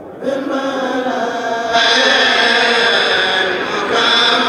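A Mouride kourel, a group of men, chanting religious verses together in unison into microphones. The chant swells about a quarter second in and grows louder again a little before the halfway point.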